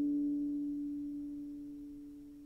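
A low harp note, with a few higher notes beneath it, ringing out and slowly fading. No new string is plucked.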